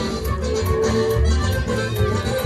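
Live regional Mexican dance music: an accordion playing held melody notes over bass and a steady dance beat.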